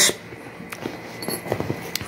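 A fabric travel bag being handled, with soft rustling and a few light clicks scattered through the moment.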